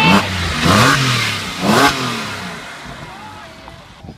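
Porsche 911 flat-six engine passing close by, revved twice about a second apart, each rise in pitch falling away again, then fading as the car moves off.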